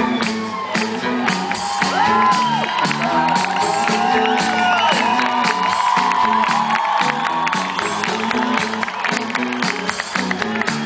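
A live band playing a song's opening with a steady beat and repeating chords, while the crowd cheers and whoops.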